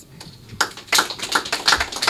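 A run of sharp, irregular taps or claps, about six a second, starting about half a second in.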